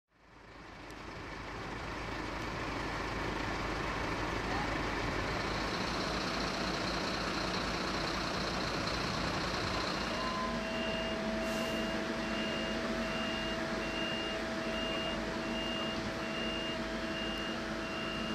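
Fire-engine motors idling with a steady rumble, fading in at the start. About halfway through, a high electronic warning beep starts repeating about three times every two seconds over a steady hum.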